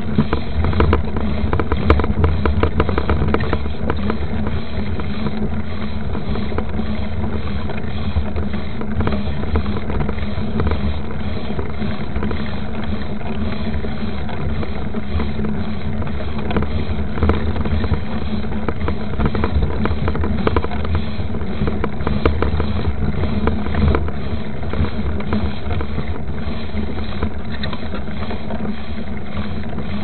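Mountain bike rolling fast on a dirt trail, heard from a camera mounted on the bike: a steady low rumble of tyre and wind noise, with many small rattles and knocks from the bumps.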